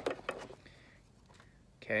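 A pause between spoken lines: near silence in a small room, with a few faint clicks near the start, and a man's voice saying "Okay" at the very end.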